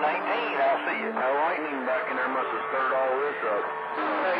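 Distant CB stations received over skip on channel 28, their voices coming through a CB radio's speaker, several talking over one another, with steady low tones held beneath them.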